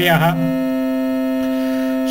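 A chanted Sanskrit syllable ends a moment in, leaving a steady electronic drone holding one pitch, with no variation, through the pause between verse lines.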